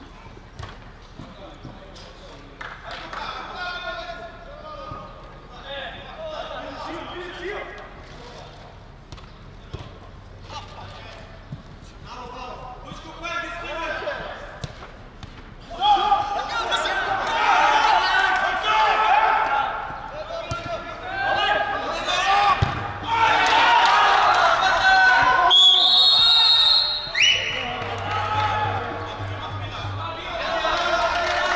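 A football being kicked on an artificial-turf five-a-side pitch, with players and onlookers shouting. The shouting gets much louder about halfway through, as play reaches the goal mouth.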